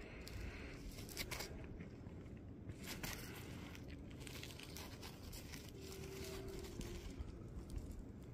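Faint rustling and small crackles: a work glove rubbing and shifting on a rough rock sample as it is turned over in the hand.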